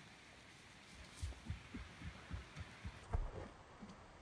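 Bare feet running on soft sand: dull low thumps about three or four a second, starting about a second in and growing louder as the runner comes closer.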